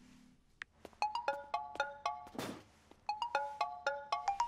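Cartoon tablet video-call ringtone: a quick run of short chiming notes, a whoosh, then the same run of notes again.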